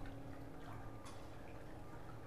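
Faint water trickling from the pool, with a few light drip-like ticks over a low steady hum.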